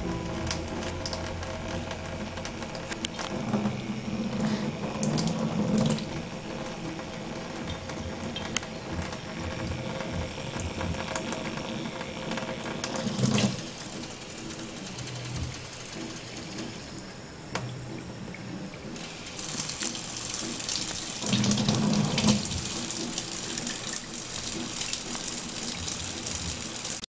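Kitchen faucet running a thin stream of water into a stainless steel sink, splashing steadily. The splash gets louder and brighter about three-quarters of the way through.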